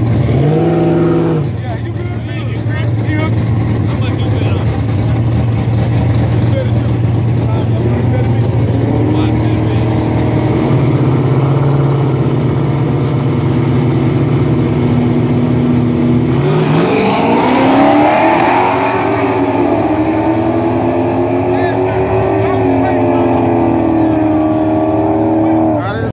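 Dodge Charger R/T 5.7 L Hemi V8s idling at a drag-strip start line, with a short rev about a second in. About 16 seconds in they launch, and the engine pitch climbs hard and then holds high, stepping down once near the end as they pull away down the track.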